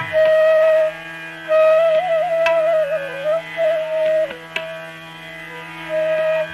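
Hindustani classical bansuri (bamboo flute) playing a slow melody over a steady drone. It holds long notes, then bends and ornaments them, with a few sparse tabla strokes.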